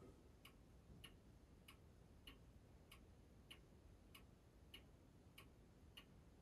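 Near silence with faint, evenly spaced ticking, about three ticks every two seconds.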